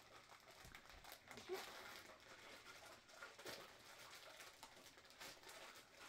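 Faint, scattered crinkling of a Funko Soda figure's foil bag being handled.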